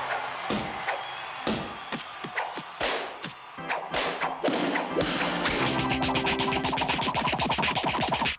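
Cartoon sound effects over background music: a string of whacks and thuds, then, from about five seconds in, a fast run of quick hits as a volley of baseballs flies across the screen.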